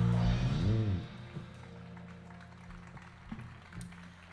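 The last notes of a live trio of guitar, double bass and percussion ring out, with a bending note just before they stop about a second in. After that only quiet stage noise remains, a low hum with a few faint clicks.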